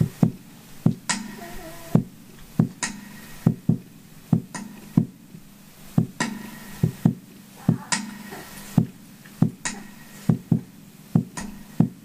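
Hugh Tracey kalimba played percussively: sharp knocks on its wooden body in a steady repeating rhythm of about two a second, some of them followed by a low kalimba note ringing briefly.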